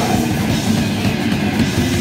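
Hardcore punk band playing live: distorted electric guitar, electric bass and drum kit, loud and dense without a break.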